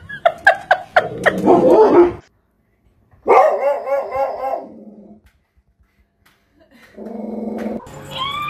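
Dogs barking: sharp high yaps and barks in the first two seconds, then after a short silence a fast run of rising-and-falling howling barks. A steady buzz starts about a second before the end.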